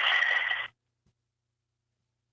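A brief rush of telephone-line hiss with a steady high tone in it, cutting off suddenly under a second in, followed by dead silence.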